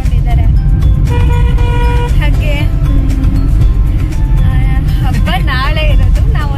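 Low, steady rumble of a car on the move, heard from inside the cabin. A woman's voice and background music sound over it.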